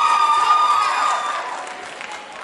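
Audience of high school students cheering and screaming in response to a call from the stage, with one long high-pitched scream held over the crowd noise. It dies down in the second half.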